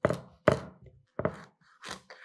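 Kitchen knife chopping through a sea bass against a cutting board: four sharp knocks in quick succession, about half a second apart.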